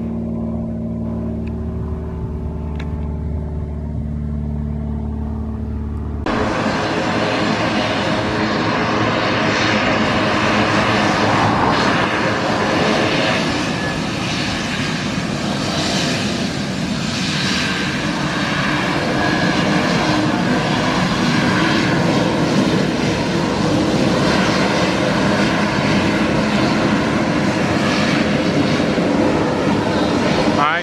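A light twin-piston aircraft's engines drone low and steady. About six seconds in the sound cuts abruptly to a Shorts 360 twin turboprop's engines and propellers running loud and steady on the runway, with a high whine over the propeller noise.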